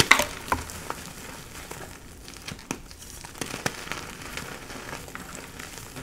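Hands crushing and squeezing crumbly gym chalk blocks in a bowl of loose powder. A burst of sharp crunches comes at the start, then softer crumbling with occasional crisp crackles.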